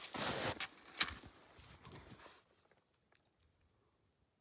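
Crunching and rustling of a person moving in snow, with a sharp click about a second in; it stops after about two and a half seconds.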